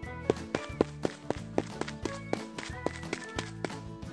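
Light background music with a cartoon running-footsteps sound effect: quick, even taps about four a second.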